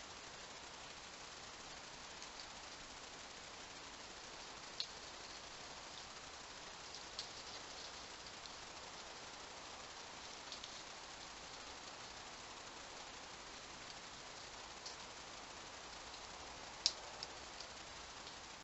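Faint steady hiss from a trail camera's night-time recording, with a few soft ticks scattered through it.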